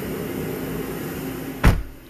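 Cabin heater blower of a GMC Acadia Denali running with a steady hum, heard from inside the car. Near the end a single sharp knock is the loudest sound, and the blower noise drops away right after it.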